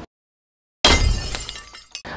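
Transition sound effect: after a short silence, a sudden crash that dies away over about a second.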